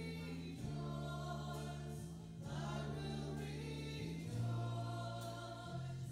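A congregational worship song: voices singing long held notes over a live band of electric guitar and bass. The bass holds each note for about two seconds before moving to the next.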